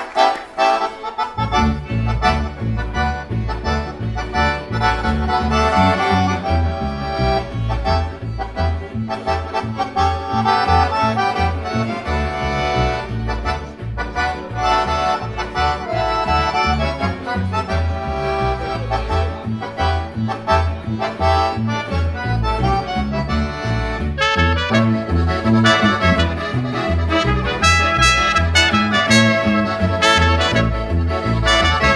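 Oberkrainer-style folk band playing an instrumental passage: accordion over a bouncing double-bass and guitar beat, with clarinet and trumpet. The bass beat comes in about a second and a half in, and the upper melody brightens near the end.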